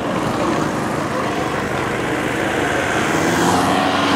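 Team follow car driving past close behind a time-trial cyclist. Its engine and tyre noise is steady and grows louder toward the end as the car draws level.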